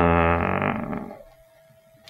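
A man's drawn-out hesitation sound, a single held "eeh" of about a second that sinks slightly in pitch and fades out, followed by quiet.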